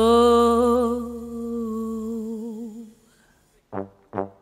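A woman holds one long sung note with a slow vibrato over a low sustained bass note, and both fade out about three seconds in. After a brief pause, short brass stabs begin near the end.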